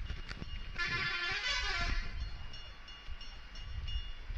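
A horn-like pitched blast lasting about a second, starting just under a second in, followed by faint thin high tones, over a steady low rumble.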